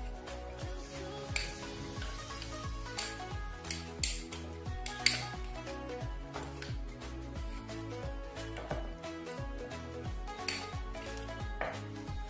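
A spoon stirring and scraping a thick paste in a small glass bowl, with frequent short clinks against the glass, over steady background music.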